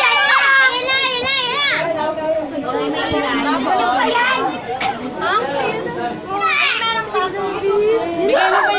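Overlapping chatter of several girls' and young women's voices, high-pitched and continuous, with no clear words.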